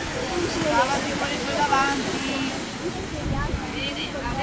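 Inline skate wheels rolling on a race track as a pack of skaters passes, under indistinct voices.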